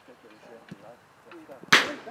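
A football struck hard: one sharp thud near the end, much louder than the players' shouts around it.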